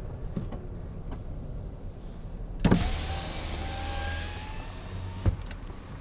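A car's electric power window motor runs for about two and a half seconds with a faint, slightly rising whine. It starts with a thump and stops with a click. The car's low engine hum runs underneath.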